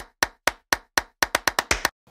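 An edited transition sound effect: a run of sharp, dry clicks over silence, a few about a quarter second apart, then quickening to about ten a second.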